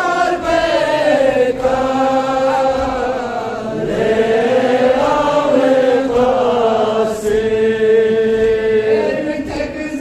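A Balti noha, a Shia mourning lament, chanted by a male reciter without instruments. It moves in long, drawn-out melodic lines, with one note held for several seconds in the second half.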